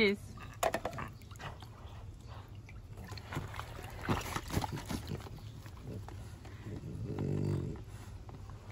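French bulldog wading in a shallow inflatable paddling pool and clambering over its soft rim with a toy in its mouth: water splashing and sloshing with knocks against the vinyl. A short, low vocal sound near the end.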